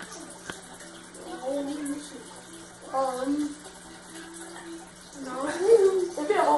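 Children's voices making short, unintelligible vocal sounds, in three brief bursts, the last and loudest near the end.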